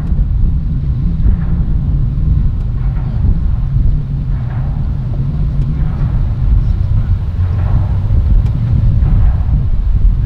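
Steady, loud low rumble of wind buffeting a shotgun microphone in its furry windscreen.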